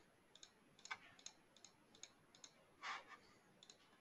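Faint, irregular clicks from a computer keyboard being operated: about a dozen short, sharp clicks, with a slightly longer, louder scrape about three seconds in.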